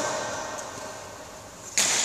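Low background of a large sports hall, then near the end a sudden loud smack of a badminton racket striking a shuttlecock.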